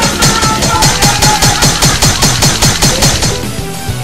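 A rapid, even run of stab or hit sound effects, about seven a second, over background music; the hits stop about three seconds in.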